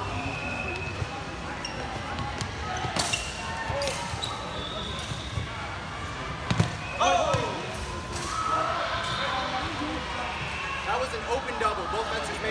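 Longsword fencing bout on a gym floor: footwork thuds and a few sharp impacts, the loudest about six and a half seconds in, over general chatter in a large hall. A voice calls out just after that loudest impact.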